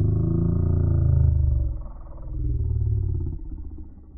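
Slowed-down audio from a slow-motion segment: a deep, drawn-out growl with a wavering pitch. It dips about two seconds in, swells again, and fades near the end.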